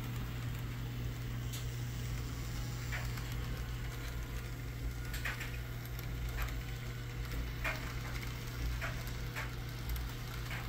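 Model diesel locomotive pulling a train of boxcars around a layout: a steady low hum with scattered light clicks, irregularly spaced, from the wheels running over the track.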